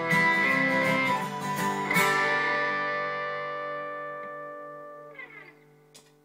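Electric and acoustic guitars strum the closing chords of a song, then let the last chord ring out and fade away over about four seconds. Near the end comes a brief falling scrape on the strings and a small click.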